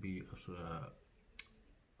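A man speaking briefly in Arabic, then a pause broken by a single short, sharp click about one and a half seconds in.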